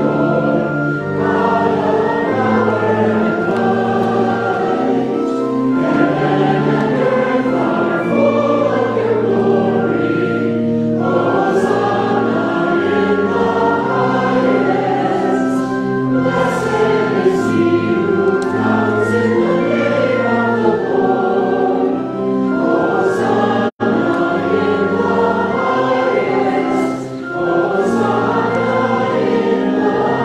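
A choir singing a sung part of the communion liturgy in long, held notes. The sound cuts out for an instant about three-quarters of the way through.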